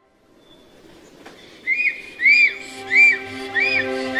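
A bird's call, a run of clear whistled notes that each rise and fall, repeated about every two-thirds of a second, starting a little under two seconds in over a soft sustained music pad.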